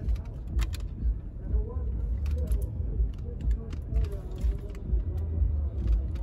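Wind rumbling on the microphone outdoors, with faint voices in the distance and a few soft clicks.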